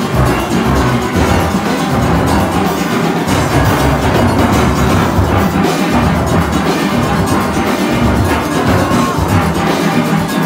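Steel orchestra playing, heard from the nine-bass section: deep, struck bass pan notes that change steadily beneath the band's higher pans.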